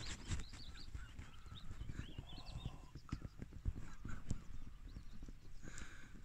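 Irregular low thuds and knocks from a cow moving and grazing right beside the phone, its hooves on the ground, with a few bird chirps in the first half.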